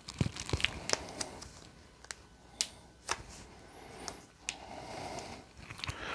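Handling noise as a wristwatch on a leather strap is put on the wrist: scattered light clicks and soft rustling.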